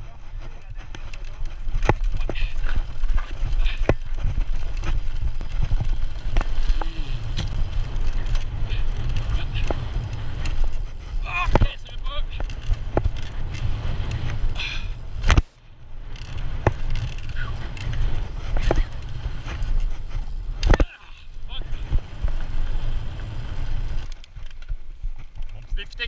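Mountain bike riding fast down a dirt trail: a steady rumble of tyres and wind on the bike-mounted microphone, with the frame, chain and suspension rattling and sharp knocks over bumps. The rumble cuts out briefly twice, around the middle and about two-thirds through.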